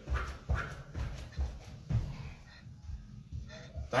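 Trainers landing on a rubber gym floor mat in rhythmic thuds, about two a second, from alternating spotty-dog jumps.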